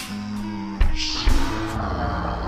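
A rock song played back from a DAW with its tempo dragged far down in a tape-style time stretch, so the pitch drops along with the speed like a tape machine winding down. It sounds like low, drawn-out held notes with a couple of slow drum hits.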